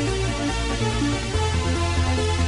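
1990s Spanish 'remember' (bakalao) electronic dance music from a DJ mix: a repeating synth riff over a pulsing bass line. The bass changes to a steadier, deeper line about two-thirds of the way in.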